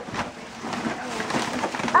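Paper rustling and a cardboard box being handled as a gift box is opened, the rustling growing louder toward the end.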